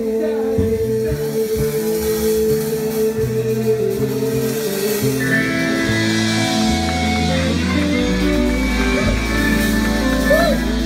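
Live rock band playing: drum kit, electric guitars and saxophone, with a singing voice. A long held note opens the passage, and the cymbals grow brighter about halfway through.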